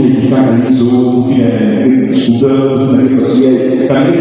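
A man chanting a sung line through a microphone, holding each note with a slowly moving pitch.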